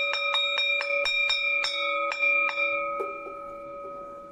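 A metal bell struck rapidly, about four strikes a second, its ringing dying away after about three seconds in.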